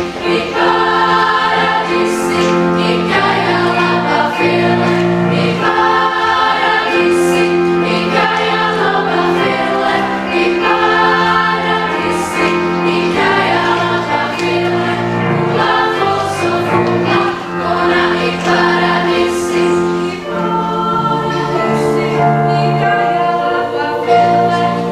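Children's choir singing in several parts, holding long sustained chords that change every second or two.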